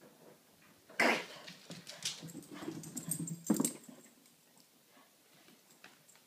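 A pug vocalizing: a sudden loud outburst about a second in, further dog sounds through the middle, and a second loud outburst at about three and a half seconds.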